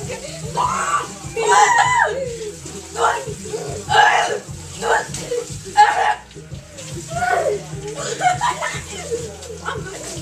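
Wordless cries and groans in short bursts from people with wasabi held in their mouths, the sounds of the burning heat.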